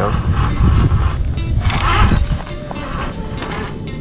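A scale RC rock crawler picking its way down rock, its drivetrain and tyres knocking and scrabbling, under a heavy low rumble that eases off about halfway through. Background music runs underneath.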